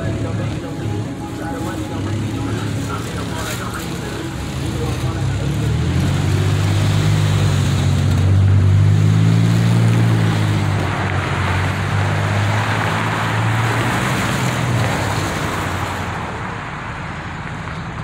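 A motor vehicle passing close by on the street: a low engine rumble with road hiss builds over several seconds, is loudest near the middle, then fades away.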